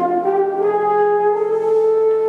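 French horn playing a jazz line: a short step upward at the start, then one long held note.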